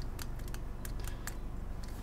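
Faint, irregular clicks of a computer keyboard and mouse, about eight or nine in two seconds, over a low steady hum.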